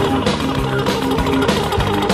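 Recorded band music with guitar over a steady drum beat.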